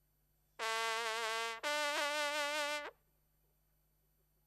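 French hunting horn (trompe de chasse) sounding two long notes, the second a little higher than the first, both with a wavering vibrato. The notes start about half a second in and stop about three seconds in.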